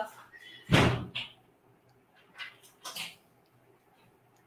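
A single dull thump about a second in, with a smaller knock just after it and a few faint short noises later on.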